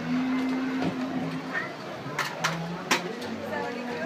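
Voices of people talking, with three sharp clicks a little past halfway through.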